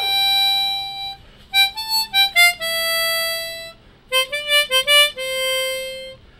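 Hering harmonica playing a slow Christmas melody, one note at a time: three long held notes with quick runs of short notes between them.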